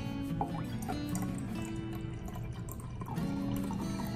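Background music, with blue Gatorade trickling and dripping from a plastic bottle into a glass of Coca-Cola.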